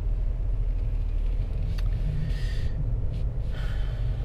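Steady low rumble of road and tyre noise heard from inside the cabin of a 2021 Mercedes 220d 4Matic diesel car on the move. Two brief soft hisses come in the second half.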